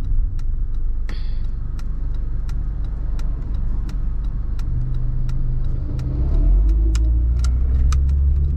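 Car interior noise while driving: a steady low engine and road rumble that grows louder about five to six seconds in as the car picks up speed, with light ticking over it.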